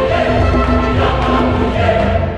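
Choral music: a choir singing held chords over a steady low accompaniment.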